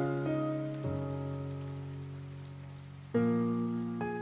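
Solo piano playing slow, soft chords over a steady sound of rain. A low chord struck a little before one second in rings and fades away, and the next chord comes in about three seconds in.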